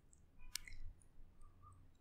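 Faint lip and tongue clicks at a close microphone, with one sharper click about half a second in, in an otherwise near-silent pause.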